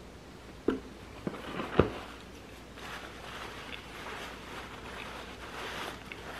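A person biting into and chewing a soft cookie butter cookie: a few short sharp clicks in the first two seconds, then faint soft chewing.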